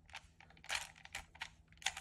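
Plastic clicks of a Rubik's brand 3x3 cube as its right layer is turned by hand: about five short clacks, the loudest near the middle.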